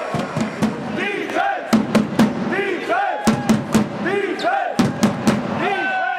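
Basketball crowd chanting and shouting in short rising-and-falling calls, with a string of sharp hits through it.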